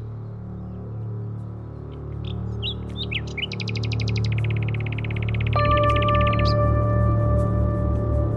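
Birds chirping, with short calls and then a fast trill, over a low droning music bed. About two-thirds of the way through, a held high note and a low pulsing beat come in and the music grows louder.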